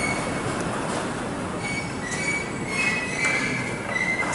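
Steady city street noise with thin, high squealing tones that come and go, strongest in the second half.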